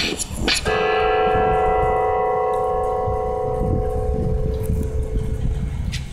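Hip-hop track ending: the beat with its quick hi-hat ticks stops under a second in, leaving one held chord that slowly fades away.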